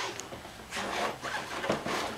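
A folded bicycle being shifted into a suitcase, with short scraping and rubbing of the bike against the case, mostly in the second half.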